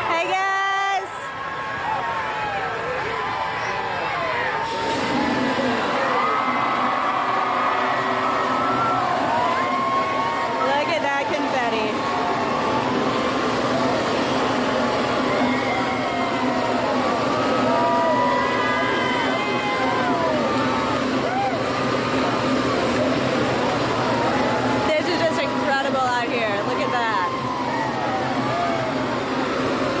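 Parade crowd cheering and shouting, many voices overlapping. A steady low hum joins in about five seconds in.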